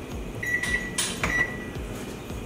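Electronic kitchen timer beeping twice, steady high tones each about half a second long, as it is set for six minutes, with a short burst of hiss between the beeps.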